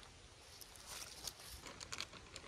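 Faint, quiet outdoor background with scattered light clicks and rustles of small handling noises.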